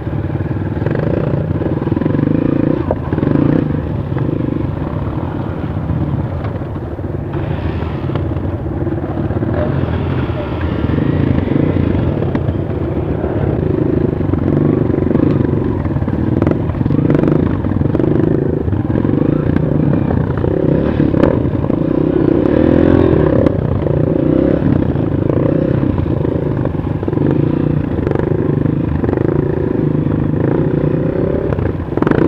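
Honda CRF 230 trail bike's single-cylinder four-stroke engine running at low, uneven revs while riding slowly over rough grass, heard from on the bike. Occasional short clicks and knocks from the bike jolting over the ground.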